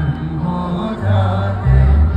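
Live band music played loud through a stage PA, with a male singer holding long notes into the microphone over heavy bass; the bass swells about a second in and again near the end.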